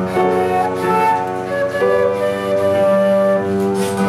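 Concert flute playing a slow melody with piano accompaniment, holding one long note in the middle.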